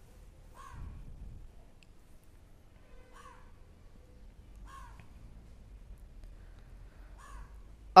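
A crow cawing: four short single caws spaced a second or more apart, over a faint low background hum.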